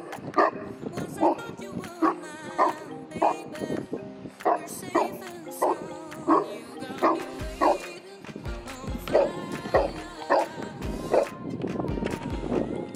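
Saint Bernard barking over and over, roughly one bark every half second or so, over background music whose low bass beat comes in about halfway through.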